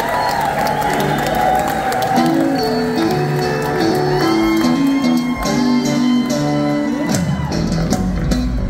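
Live band playing an instrumental passage on electric guitars, piano and drums, with long held lead notes that step and bend over the band.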